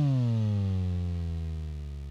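A rock band's final chord ringing out: a pitched tone slides steadily down and levels off low while the held low notes beneath it fade away.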